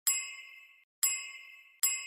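Three bell-like ding sound effects, the second about a second after the first and the third under a second later. Each one is struck sharply and rings briefly before cutting off.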